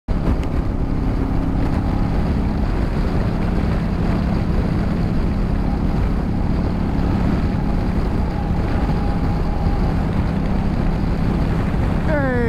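Adventure motorcycle engine running at a steady cruising speed, with wind noise buffeting the microphone. The engine's tone holds steady throughout, under a constant rush of wind.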